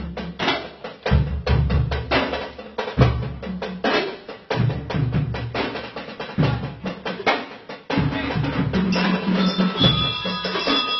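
Drum and lyre corps drumming: bass drums and other drums beat out a steady marching rhythm. Near the end, the lyres (metal-bar bell lyres) come in with ringing notes over the drums.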